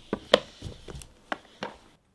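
Cardboard card-game boxes being handled and set down on a cloth-covered table: a string of about six light knocks and taps.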